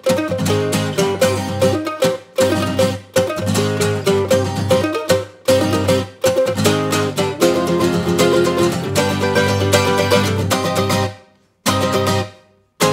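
Acoustic mandolin and guitar playing an instrumental folk passage with a bluegrass feel, with brief stop-time breaks. The music dies away to silence near the end.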